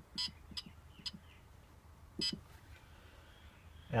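Four short electronic beeps, irregularly spaced, from a Bartlett 3K kiln controller's keypad as its buttons are pressed, over a faint low hum.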